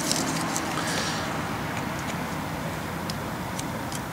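A steady low mechanical hum, with a few light clicks from probing wire connectors with a test light.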